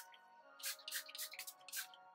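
Small pump spray bottle of leave-in conditioner misting onto damp hair: a quick run of short hissing spritzes, about five or six, starting under a second in. Faint background music underneath.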